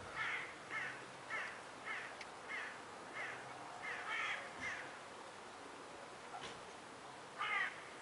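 A bird calling in a series of short calls, about two a second, then a pause and one more call near the end.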